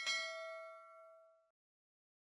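A single bright bell-like ding, the notification-bell sound effect of an animated subscribe button, struck once and fading away over about a second and a half.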